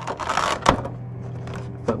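Clear plastic blister packaging crackling as it is handled, with one sharp click about two-thirds of a second in.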